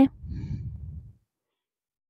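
A person breathing out close to the microphone, a low breathy sound about a second long.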